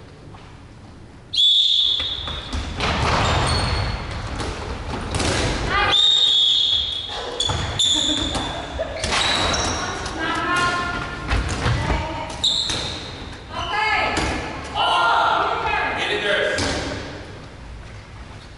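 Dodgeballs being thrown, hitting players and bouncing on a hardwood gym floor, with players shouting, echoing in a large sports hall. The play starts suddenly about a second and a half in, after a short quiet, and goes on with repeated ball impacts.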